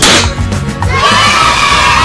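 A confetti-cannon pop with a short hiss at the start, then a crowd of children cheering from about a second in, over upbeat music.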